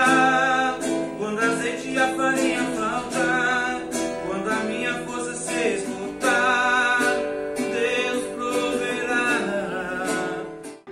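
A man singing a Christian hymn of praise while playing a nylon-string acoustic guitar. He holds long notes with vibrato over the guitar accompaniment.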